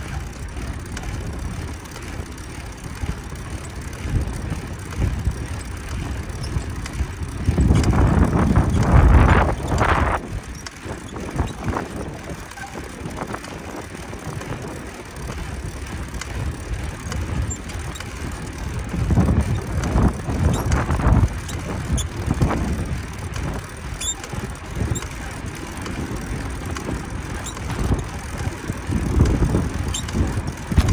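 Wind and road rumble on the microphone of a handlebar-mounted camera on a moving bicycle, a steady low rush from the air and the tyres on cracked pavement. It swells louder about eight seconds in and again around twenty seconds.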